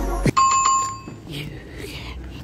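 Music cuts off about a quarter second in. A small bell then rings a quick trill of several strikes, a clear high ring that dies away after about a second.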